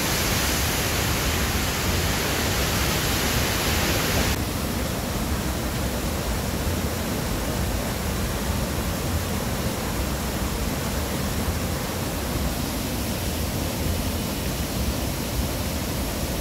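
Dhuandhar Falls, a broad waterfall on the Narmada, rushing with a loud, steady noise of falling water. About four seconds in, the sound turns duller as its hiss drops away.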